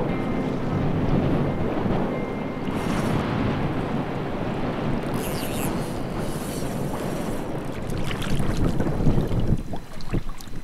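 Wind buffeting the microphone over the noise of shallow seawater around wading anglers, steady for most of the time. Near the end come louder, irregular splashes as a bonefish is handled in the water.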